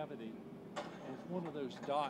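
Speech: a person talking in short phrases.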